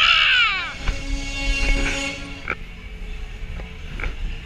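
Riders screaming on a Miami fairground ride, with a shrill scream sliding down in pitch in the first second. Fairground music follows, holding a steady chord, with a few sharp clicks in the second half.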